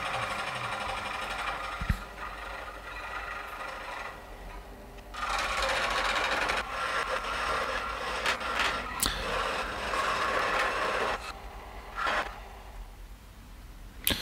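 Feidwood scroll saw running, its reciprocating blade cutting the curved outline of a padauk guitar headstock faced with an ebony veneer. The cutting sound is louder and fuller from about five seconds in to about eleven seconds, then drops back.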